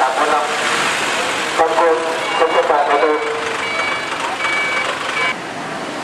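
Bus station din: a steady wash of bus engines and traffic, with people's voices in the first half and a run of high, even electronic beeps from about two seconds in until just past five seconds.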